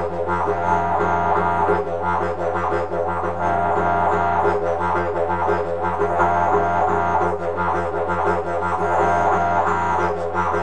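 Didgeridoo played with a continuous low drone, the player tonguing a rolling rhythm over it with three quick 'da' pulses at the start of each phrase.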